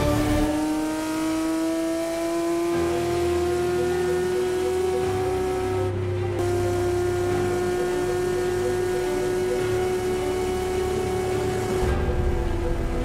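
Ferrari racing engine at full throttle in a high gear, heard from inside the cockpit, its note climbing slowly as the car gathers speed down a long straight. Near the end the pitch starts to drop as the driver lifts off.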